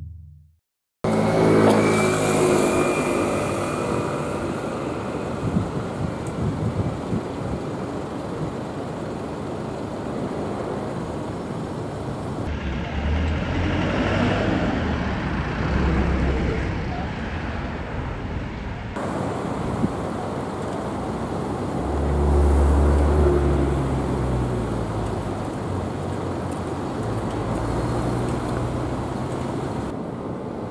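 City street traffic: cars passing and engines running, starting about a second in. One heavier engine swells louder about three-quarters of the way through.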